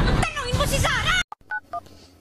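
A woman's voice for about the first second, then a few short touch-tone keypad beeps of a phone number being dialled.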